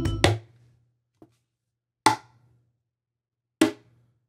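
Hand-struck percussion hits recorded live into a sampler. There are three sharp knocks, each with a short ring, spaced about one and a half to two seconds apart, and a faint tick between the first two.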